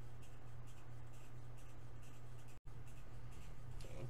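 Quiet room tone: a steady low hum with faint scratchy rustling, broken by a brief dropout to silence about two and a half seconds in.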